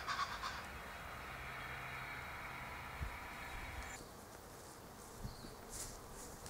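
A faint steady buzz holding a few level tones, which cuts off suddenly about four seconds in, with a couple of soft low thumps.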